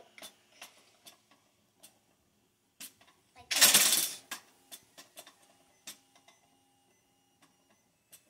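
Light plastic clicks as the trigger of a 3D-printed automatic hook setter is worked, then, about three and a half seconds in, a short loud rush of noise as the setter fires and flings the ice-fishing rod upright, followed by scattered small clicks and rattles of the frame.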